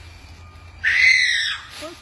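A person's short, high-pitched scream about a second in, rising and then falling in pitch.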